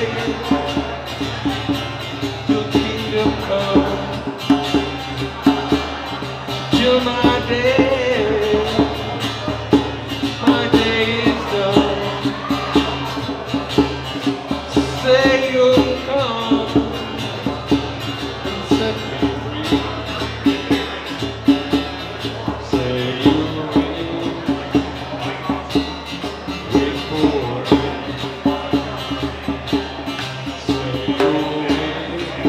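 Live acoustic song: a strummed acoustic guitar and a djembe played by hand keeping a steady beat, with a man singing in phrases over them.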